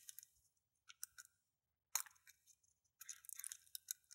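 Faint clicks of a lock pick probing the pins inside a small pin-tumbler lock cylinder to count them: a few single clicks, then a quick run of clicks near the end.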